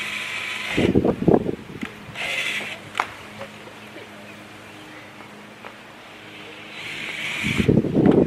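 Power drill driving screws in short bursts, three times: at the start, about two and a half seconds in, and near the end. Muffled voices come in about a second in and again at the end.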